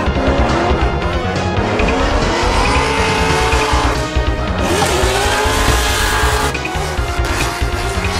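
Two drift cars' engines revving up and down with tyres sliding through a tandem drift, mixed with background music that has a steady beat.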